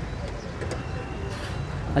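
Open-air market background: a steady low rumble with distant voices and a few faint clicks.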